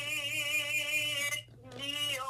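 A singer holding one long note with vibrato in a worship song; it breaks off about a second and a half in, and a new sung note begins just after.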